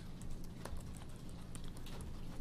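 Computer keyboard typing: a short run of faint, light keystrokes.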